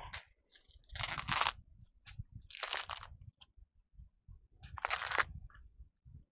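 Green husk leaves being torn back by hand from an ear of sticky corn: three tearing rips of about half a second each, roughly two seconds apart, with faint handling knocks between.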